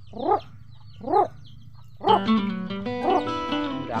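Chicks peeping faintly, with two short animal calls that rise and fall in pitch in the first second and a half. About halfway through, music with plucked strings comes in and takes over.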